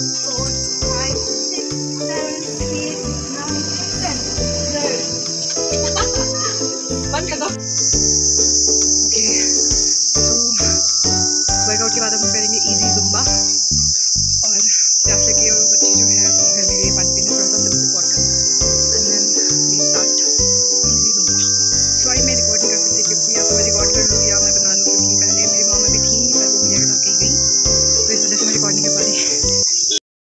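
Insects chirring in one continuous high-pitched drone that gets louder about 8 seconds in.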